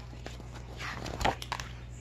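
A paperback sticker book being handled and shut: a short paper rustle, then a knock a little over a second in as the book closes, over a steady low room hum.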